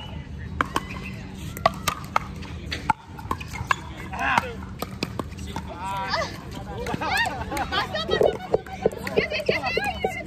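Scattered sharp pops of pickleball paddles striking plastic balls around the courts, irregular and coming every half second to second, with people talking in the background.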